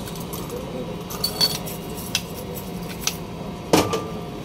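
Metal parts of a pneumatic jet chisel (needle scaler) clinking and clicking as the tool is handled and reassembled: a few light clicks, then a louder clack near the end.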